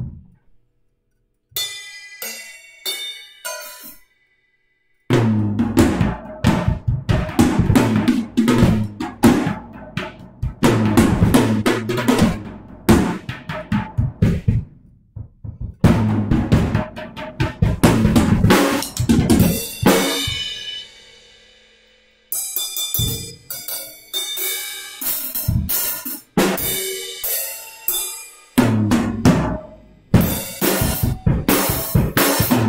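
Acoustic drum kit played freely: a few light cymbal and drum taps, then about five seconds in a full groove of kick drum, snare and cymbals. Around twenty seconds the playing stops and a cymbal rings out and fades, then the kit comes back in.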